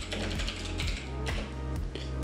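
Computer keyboard typing: a quick run of keystroke clicks, over steady background music.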